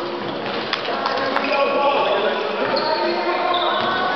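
Echoing voices and chatter in a large gymnasium, with a few sharp knocks of a basketball bouncing on the hardwood court in the first second and a half.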